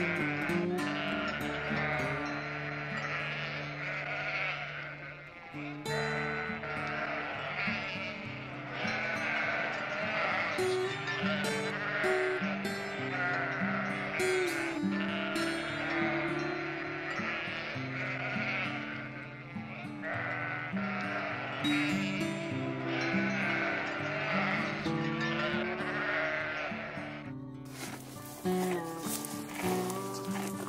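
Sheep bleating, many calls one after another, over background music with a slow stepping melody.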